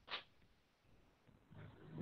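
Near silence: room tone, with a brief faint sound just after the start and faint low sounds near the end.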